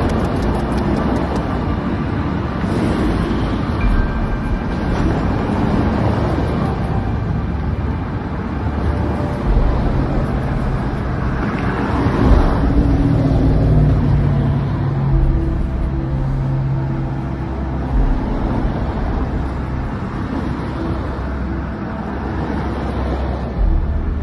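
Road traffic on a busy highway: a steady rumble of passing cars and engines.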